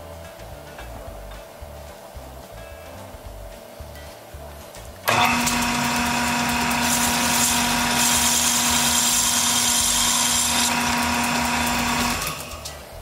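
Lathe starting abruptly about five seconds in and running steadily with a wooden wagon-hub blank spinning in it: an even motor hum and whine over a broad hiss, with a brighter hiss joining for a few seconds in the middle. Soft background music before it starts.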